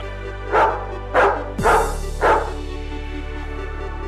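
A dog barking four times, about half a second apart, over electronic background music with a steady low beat.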